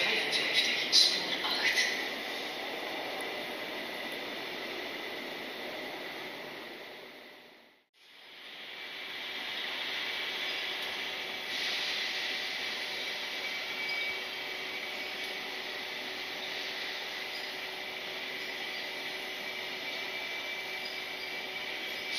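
Railway platform ambience with a few clicks in the first couple of seconds, fading out to silence at about eight seconds. It fades back in on a passenger train rolling slowly past, a steady rumble with a thin high whine.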